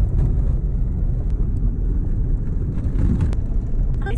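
A car driving on an unsealed dirt road, heard from inside the cabin: a steady, loud low rumble of tyres and running gear.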